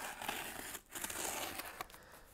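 A small cutter blade slitting the packing tape along the seam of a corrugated cardboard box, a scratchy hiss in two strokes with a brief break just before a second in.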